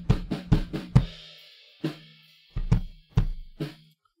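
Recorded kick drum from the kick-in and kick-out microphone tracks playing back together, with cymbal bleed behind: a quick run of about five hits in the first second, then three or four spaced hits. One track's phase has been deliberately altered, so phase cancellation thins out the kick's bottom end.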